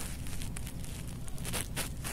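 Faint rustling handling noise with a few light clicks, as small hands work a nail polish bottle's brush cap.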